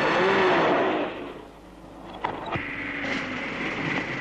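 A car driving in, loudest at first and fading over the next two seconds, with a few clicks after halfway.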